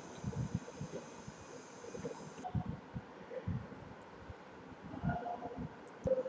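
Low, irregular rumbling and thudding noise on the microphone during a pause in speech, with a short hesitation sound near the end.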